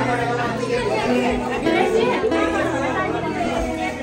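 Many people chattering at once over background music.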